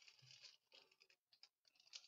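Faint, irregular crinkling of a foil trading card pack wrapper being handled in the fingers.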